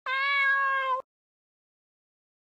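A single cat meow, about a second long, held at a steady pitch and cut off abruptly.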